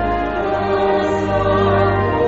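Buddhist devotional song: a choir singing long held notes over a steady low accompaniment.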